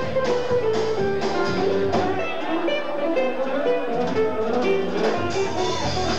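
Live band playing an instrumental passage with electric bass, a plucked string instrument and drums.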